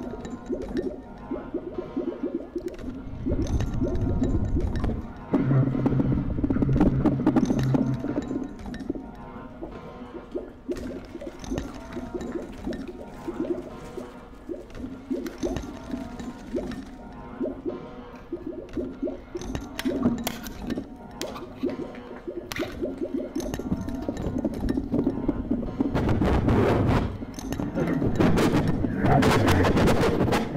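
Free improvisation on bass clarinet and drum kit: the bass clarinet holds low sustained notes while the percussion adds scattered clicks, clinks and cymbal strikes. It swells louder about 3 to 8 seconds in and again near the end.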